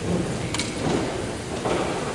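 A man lecturing in a large, echoing gymnasium, his voice indistinct and washed out by the hall's reverberation over a steady hiss of room noise.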